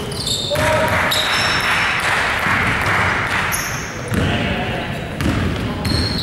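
Basketball game on a hardwood court in an echoing sports hall: sneakers squeaking, the ball bouncing and players shouting.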